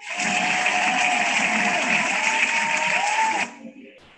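Applause from a small group, with a thin wavering tone rising and falling over it. The sound cuts off abruptly after about three and a half seconds.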